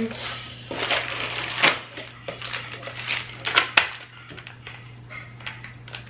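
Rustling of cardboard packaging and clinking of small metal hardware parts being rummaged through, with a few sharp clicks, loudest about two and three and a half seconds in. A low steady hum runs underneath.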